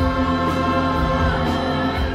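Live stage-musical music: choral voices holding sustained chords over a low instrumental accompaniment.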